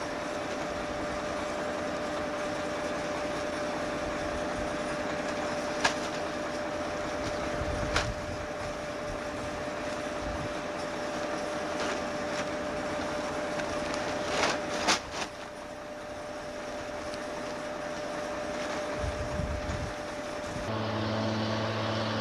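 Bulldozer diesel engine running steadily at half throttle, with a few short sharp rustles as the foil fire shelter is unfolded and shaken out. Near the end a different, lower engine hum takes over.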